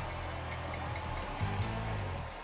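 Music with a low bass line that changes note about one and a half seconds in.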